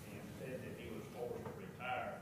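A person speaking quietly in a meeting room, words the recogniser did not catch, with one louder drawn-out syllable near the end.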